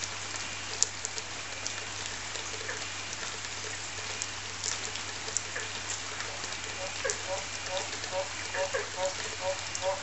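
Chorus of frogs calling after rain: a dense, even wash of many calls with scattered clicks and a steady low hum under it. From about seven seconds in, one nearby frog's short calls come in on top, repeating about two to three times a second.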